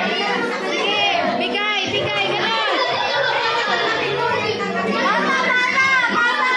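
A crowd of children chattering and calling out all at once in a room, many high voices overlapping without a break.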